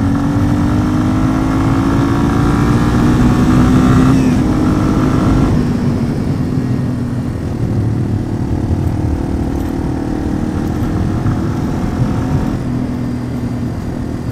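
Yamaha TW200 dual-sport motorcycle's single-cylinder engine under hard acceleration, its pitch climbing slowly for about five seconds as the small bike gains speed without much hurry. The pitch then drops and the engine runs steadier at speed, over a rumble of wind noise.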